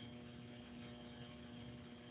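Faint steady electrical hum with background hiss: the room tone of a computer microphone.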